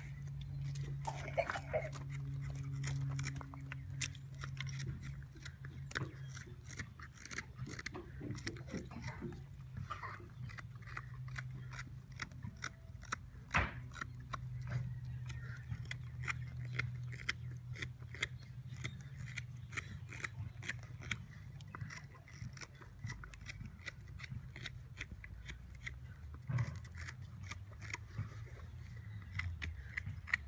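Carving knife slicing shavings from a wooden spoon blank: an irregular run of short, crisp cuts, at times several a second, over a steady low hum.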